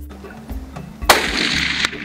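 A single rifle shot about a second in, sudden and loud, its ringing tail cut off abruptly less than a second later, over steady background music.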